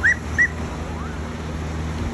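Two short high animal calls about a third of a second apart, each rising then falling, over a steady low rumble.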